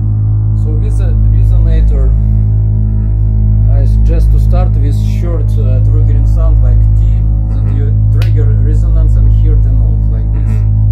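Soma Pipe electronic instrument on its Orpheus algorithm, sounding a steady low drone rich in overtones, with shifting voice-like resonances that bend and wander above it from about a second in to near the end.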